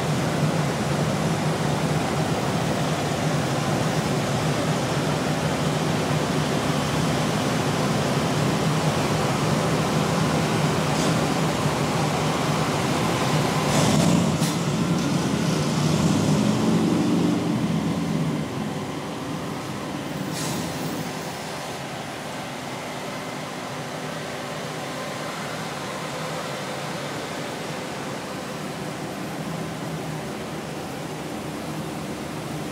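Cars of a slow motorcade passing close by: a steady rumble of engines and tyres that swells a little past the middle, with two brief clicks, then settles to a lower level.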